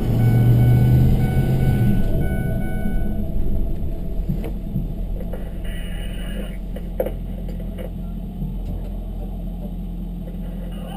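Low, steady engine rumble heard from inside a vehicle's cab. It is loudest for about the first two seconds and then settles to a quieter hum, with a few faint knocks later on.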